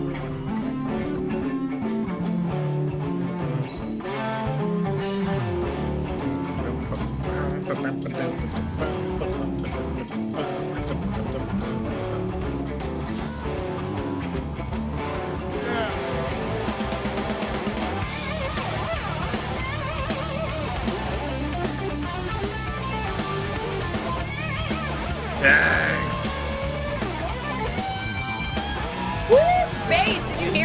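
A live hard rock band plays, led by a distorted electric guitar, with bass and drums underneath.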